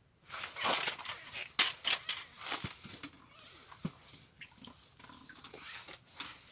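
A whitefish being hauled up through an ice-fishing hole: rustling of clothes and fishing line as the rod is lifted, with a few sharp clicks and knocks about one and a half to two seconds in, then quieter handling noises as the fish comes out onto the ice.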